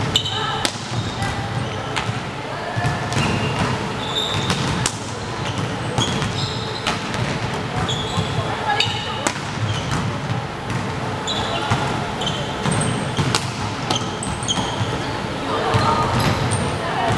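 Volleyball rally on a wooden sports-hall floor: scattered short sneaker squeaks throughout, a few sharp smacks of the ball being hit, and indistinct players' and spectators' voices echoing in the hall.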